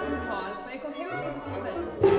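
Contemporary chamber ensemble music: low held notes from the bass instruments start and stop under a tangle of overlapping, indistinct voices with no words that can be made out.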